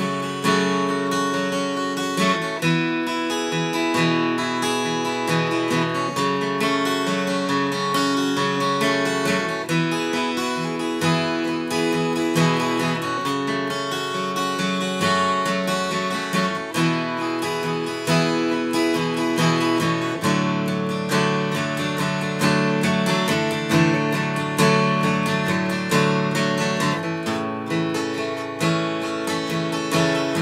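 Martin J-40 acoustic guitar played alone through an instrumental passage, strummed chords ringing and changing every few seconds.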